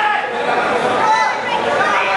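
Indoor crowd of spectators, many voices talking and calling out at once in a steady babble.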